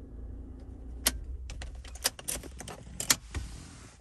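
A transponder car key clicking and jangling in a Toyota RAV4's ignition cylinder as it is turned and pulled out, in sharp clicks and rattles from about a second in. A low steady engine hum runs underneath.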